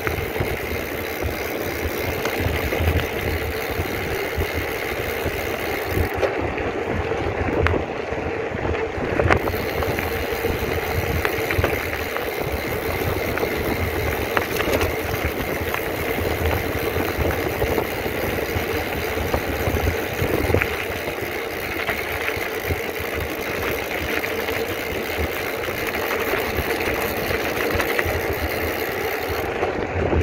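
Wind buffeting the microphone and tyre rumble of a mountain bike rolling fast down a rough gravel road: a steady, loud rushing noise. The high hiss thins for a few seconds about six seconds in.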